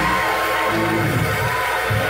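Live gospel music from a church band and choir, with held notes over a steady low beat.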